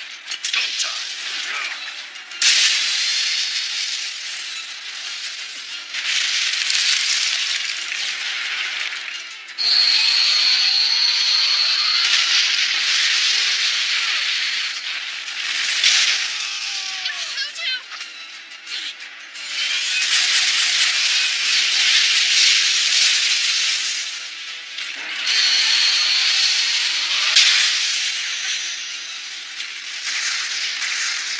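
Anime battle sound effects: long hissing rushes of noise that swell and fade several times, with a high steady ringing tone twice, over music.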